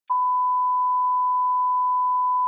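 Steady 1 kHz reference tone, the line-up tone that plays with SMPTE colour bars at the head of a tape for setting audio levels. It starts abruptly and holds at one even pitch and level.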